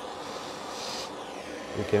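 A brief hiss of breath blown onto a hot narrowband oxygen sensor, about a second in, over a steady low background hiss; the sensor is being starved of fuel-rich heat so it swings to reading lean.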